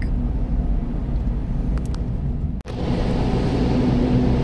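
Car driving through a road tunnel, heard from inside the cabin: a steady low rumble of engine and tyres. It cuts out for an instant about two and a half seconds in and comes back with more tyre hiss.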